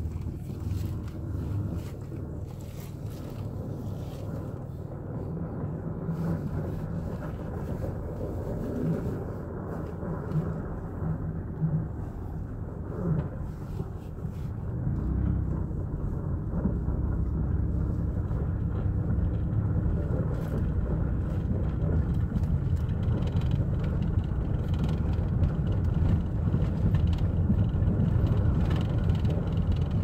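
Car running at low speed, heard from inside the cabin as a steady low engine and road rumble that grows louder about halfway through.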